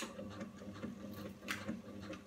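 Zen Chi oxygenator machine's motor starting up and running with a steady low hum as it begins rocking the feet from side to side, with light clicking and a sharper click about one and a half seconds in.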